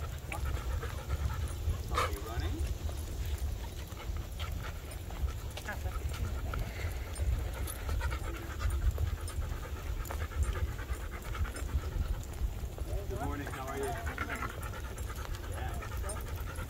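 A dog panting steadily as it walks on a leash, over a low rumble on the microphone, with one sharp click about two seconds in.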